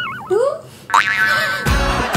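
Cartoon-style comedy sound effects: a sudden pitched sound at the start and another about a second in, each gliding in pitch. Near the end, background music with a heavy bass beat comes in.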